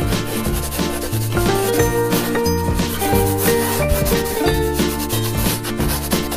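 Cheerful background music with a melody over a bass line, overlaid by a scratchy rubbing sound of colouring in on paper.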